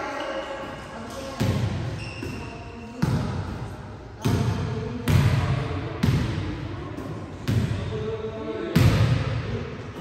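Volleyballs being struck in a passing drill: about seven sharp thumps, irregularly spaced about a second apart, each echoing in a large gym hall.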